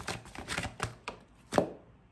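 A deck of oracle cards being shuffled by hand: a quick, irregular run of card snaps and taps, the sharpest about a second and a half in.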